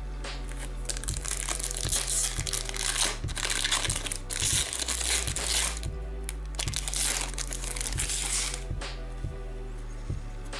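Trading cards rustling and crinkling as a stack is shuffled through by hand, in several bursts between about one and eight and a half seconds in, over background music with a steady beat.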